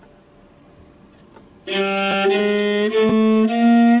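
Quiet room tone, then about a second and a half in a viola starts a one-octave chromatic scale on G. Separate bowed notes of about half a second each step up in pitch by semitones.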